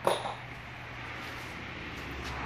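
A single short metallic clink at the start as a deck screw is picked up, then a steady low hum.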